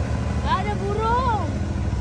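Abra water taxi's engine running with a steady low hum. Over it is one long voice-like call that rises and then falls, about a second long.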